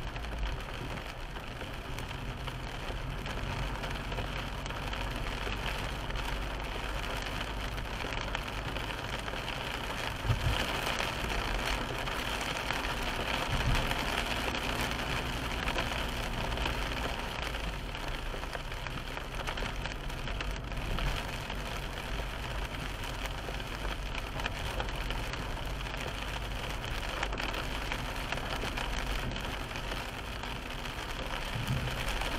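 Car driving on a wet road in rain, heard from inside the cabin: a steady mix of tyre, road and engine noise with rain on the car. About ten seconds in there is a thump, followed by a few seconds of louder hiss.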